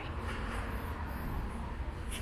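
Steady background noise with no distinct events, such as the ambience of an open car lot picked up by a handheld phone.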